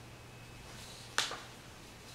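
A single sharp click, like a small hard object tapped or set down, about a second in, with a fainter click just after it, over a faint steady hum.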